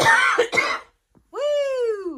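A short, breathy, cough-like vocal burst, then a high voice calling out one long cheer whose pitch rises and then falls, lasting about a second.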